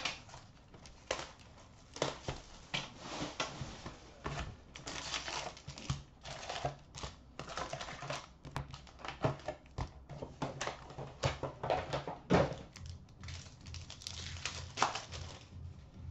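Crinkling, rustling and tearing of hockey card packs and their cardboard box as the box is opened, the packs pulled out and torn open. The sounds come in irregular bursts with sharp clicks and taps of handling.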